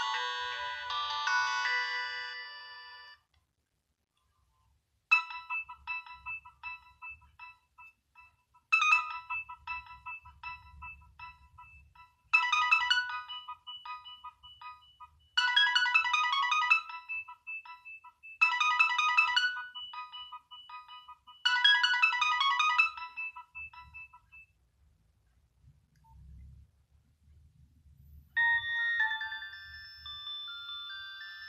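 Nokia 6030 mobile phone playing polyphonic ringtone previews through its small loudspeaker. One tune dies away about three seconds in. After a short pause a second tune repeats a short chiming phrase about every three seconds, then stops, and a new ringtone starts near the end.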